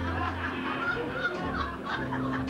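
Audience laughing after a joke's punchline, many voices at once, over the band's low sustained notes.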